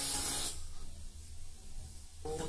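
White-noise hiss of TV static from a Sony 32R300C LED TV's speaker on an untuned channel, cutting off suddenly about half a second in as the set tunes to a station, leaving only a low steady hum.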